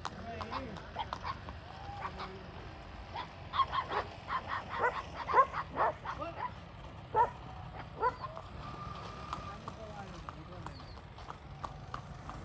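Dogs barking, a quick run of barks in the middle of the stretch, then quieter.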